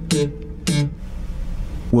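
Four-string electric bass guitar with its G string popped by a finger, pinched off the string, twice about half a second apart. The two notes are bright and snapping, and they ring on low afterwards.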